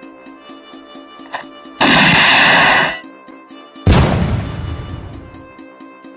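Film soundtrack: music with a steady pulse, broken by a loud blast about two seconds in that lasts about a second. Then a single loud gunshot comes near four seconds in and echoes away slowly.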